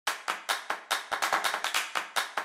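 A run of sharp hand claps, about five a second at first and coming faster after about a second.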